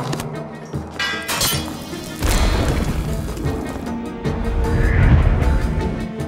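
Dramatic film-score music. About two seconds in, a deep boom lands and the music stays loud after it.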